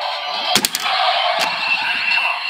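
The DX Kamen Rider Saber sword-belt toy plays its electronic standby music and sound effects through its small speaker. Sharp plastic clicks come about half a second in and again near a second and a half, as the Primitive Dragon ride book is swung open on the belt.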